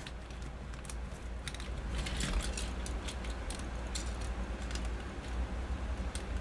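Hard plastic toy parts clicking and rattling as a Transformers Siege Megatron figure in tank mode is handled and a weapon is fitted to its side: a scatter of small sharp clicks over a low steady hum.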